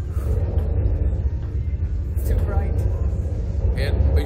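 Steady low rumble on the ride capsule's onboard camera microphone, with a brief faint voice about two and a half seconds in.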